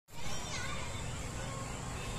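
Distant voices, children's among them, over a steady background hiss and hum. A short high call falls in pitch about half a second in.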